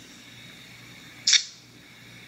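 A single short, sharp tap or scratch of fingernails on a drink can, heard through a video call's speaker, about a second in, over a faint steady hum.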